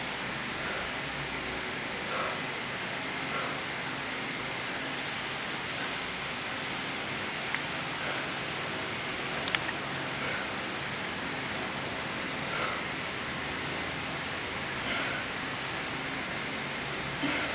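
Steady background hiss with no speech. Faint soft sounds come every second or two, and two sharp clicks fall about halfway through.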